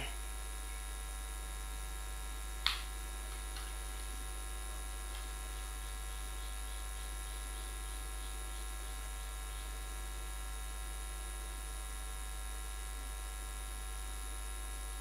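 Steady electrical mains hum on the audio line, with one short tick a little under three seconds in.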